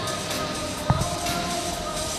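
Music playing through the hall, with one sharp thump a little under a second in: a gymnast landing on a competition trampoline bed.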